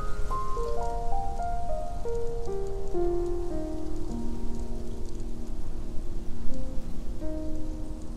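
Solo piano playing a soft, slow passage of single notes stepping down in pitch and left to ring on, over a steady background of noise.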